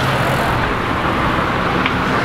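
Steady roadside traffic noise with a low hum, as of a vehicle engine running close by.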